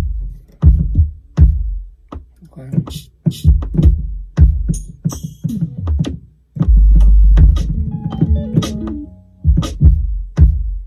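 Electronic drum-machine kick pattern looping at about 80 BPM in a DAW, with a low thump every beat. Other drum-kit samples are auditioned over it from a keyboard: sharp, bright higher hits in the middle, then a long, low sustained bass boom about two-thirds of the way in.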